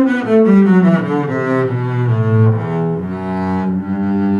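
Double bass played with a bow: a quick run of notes falling in pitch, ending on a low note held from about three seconds in.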